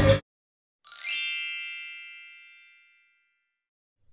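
A rock song cuts off abruptly. About a second later a single bright, bell-like chime strikes once and rings out, fading away over about two seconds.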